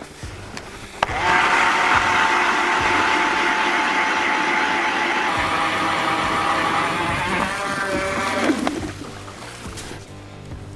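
ION battery-powered electric ice auger drilling through lake ice: a steady motor whine over the grinding of the blades. It starts about a second in and falls in pitch near the end as the motor winds down.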